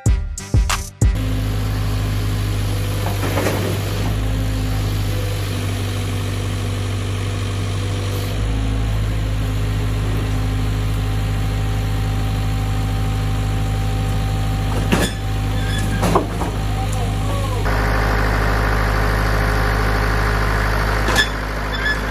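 Music with a drum beat cuts off about a second in, and an excavator's diesel engine runs steadily in its place while the arm lifts a heavy load; its note shifts about a third of the way through and again near the end, with a couple of brief knocks shortly before the second change.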